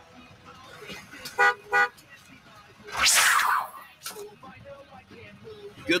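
Vehicle horn tooting twice in quick succession, followed about a second and a half later by a short rush of noise that falls in pitch.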